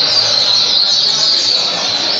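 Caged double-collared seedeater (coleiro) singing a fast, unbroken run of high, sweeping chirps.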